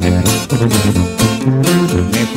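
Instrumental passage of regional Mexican band music: plucked and strummed guitar over a bass line that steps from note to note, with no singing.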